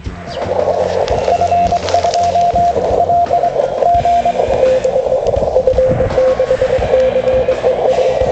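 Morse code (CW) heard through a shortwave radio receiver: a single pitched tone keyed in dots and dashes over a narrow band of receiver hiss. A higher-pitched station sends first, then a lower-pitched station takes over about halfway through.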